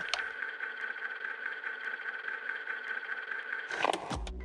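A steady, even drone with one held high tone running through it, and a short click just after it begins. It cuts off shortly before the end.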